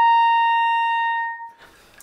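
Soprano clarinet sounding one held high C, a clear steady note of about a second and a half that tapers and fades out. This is the upper-register note she had trouble getting out, played right after singing the pitch to help her voicing.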